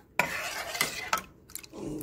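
Metal spoon stirring a thin batter in a metal bowl, scraping and clicking against the sides.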